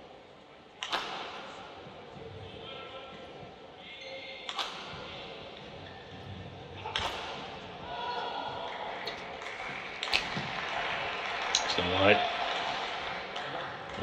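Badminton rally: five crisp racket strikes on the shuttlecock, two to three seconds apart, ringing in a large sports hall. A short voice call comes near the end as the rally finishes.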